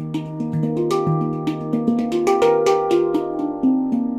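Xenith handpan, a 20-inch steel handpan tuned to an E-flat Arrezo scale (Eb / Bb C D Eb F G Bb), played with the fingers: a quick flow of struck notes, each ringing on and overlapping the next, busiest in the middle.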